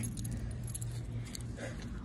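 Faint light metallic jingling, a few small clinks scattered through, over the low rumble of a handheld phone microphone being carried.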